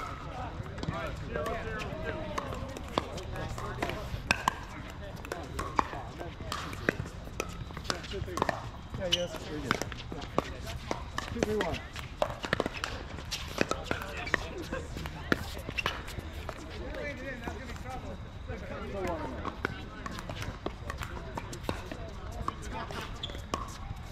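Pickleball paddles hitting a plastic pickleball, and the ball bouncing on the hard court: repeated sharp pops at irregular intervals, with players' voices in the background.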